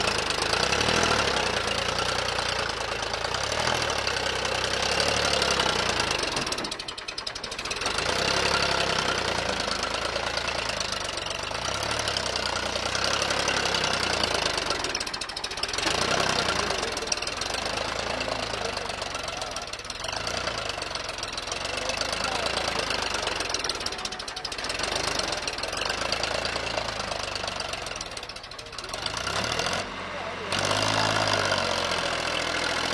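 Powertrac 434 DS tractor's three-cylinder diesel engine working hard under heavy load as it pulls a loaded sand trolley through deep sand. The engine runs continuously, dipping briefly every few seconds.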